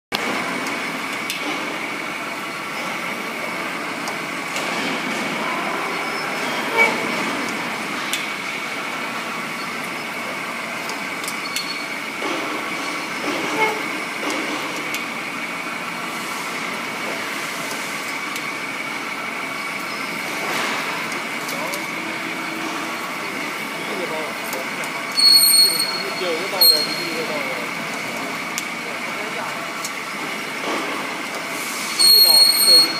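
Electric split-frame pipe cutting and beveling machine running on a steel pipe, its rotating ring carrying the cutter around and cutting, with a steady high whine and scattered clicks of metal chips. Near the end, two brief louder high-pitched sounds stand out.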